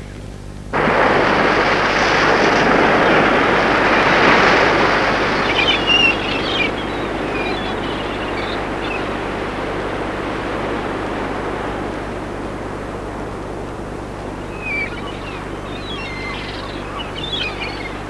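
Small waves washing onto a sandy shore, an even wash of noise that starts suddenly about a second in and is loudest in the first few seconds. Birds chirp briefly a few times.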